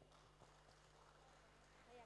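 Near silence: room tone with a faint steady low hum and a few faint clicks in the first second.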